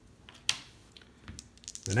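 Cardboard game counters being handled and set down on a board: one sharp tap about half a second in, then a few faint clicks. Speech starts again near the end.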